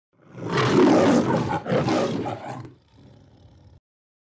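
A lion roar used as an intro sound effect: two long roars, the second fading out about three seconds in, then a faint tail that cuts off just before the title card appears.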